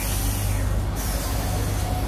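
Cairo Metro train at a station platform: a sharp hiss of air lasting about a second, typical of the brakes releasing before departure, over a low rumble. A steady whine begins near the end as the train starts to pull away.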